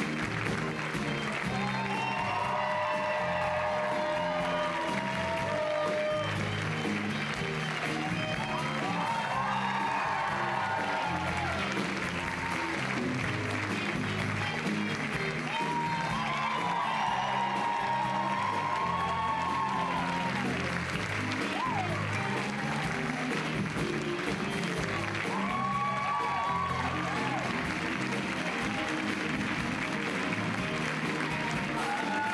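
Upbeat stage music with a steady bass line, played under continuous audience applause, with voices rising above it several times.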